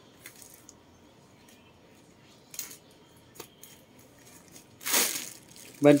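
A leather travel bag being handled and opened: a few faint light clicks from its zipper hardware, then a short loud rustle about five seconds in as the main compartment is spread open over its plastic bubble-wrap stuffing.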